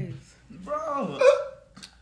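A short burst of a person's laughing vocal sound, followed near the end by a single sharp click.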